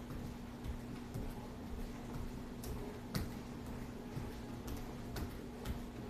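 Irregular light taps and clicks, about one or two a second, from hands slapping down on the floor and on the shoulders during plank shoulder taps, over a steady low hum.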